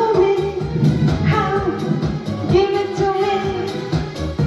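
A woman singing long held notes into a microphone over pop music with a steady beat.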